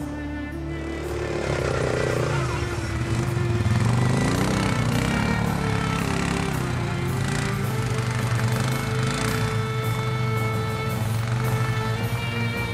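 ATV engine running and revving, mixed with background music. The engine comes up from about a second in, with rising and falling revs a few seconds later.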